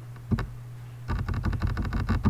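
A steady low hum with a single sharp click about a third of a second in. From about a second in, a dense, rapid run of clicking and rustling.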